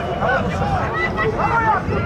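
Several men's voices shouting and calling over one another during a football match, over a steady low rumble of stadium noise.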